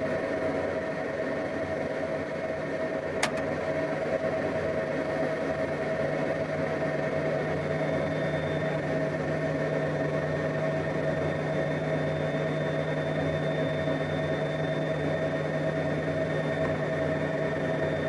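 Steady electrical hum and fan whir from test-bench equipment running while an amplifier is driven hard into a dummy load. A single sharp click about three seconds in, after which the sound is slightly quieter.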